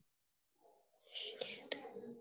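Silence, then about a second in a faint, whispery voice, most likely a student answering over a weak online connection.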